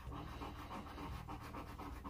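A penny scraping the scratch-off coating from a lottery ticket: a quiet, continuous rasp of coin edge on card.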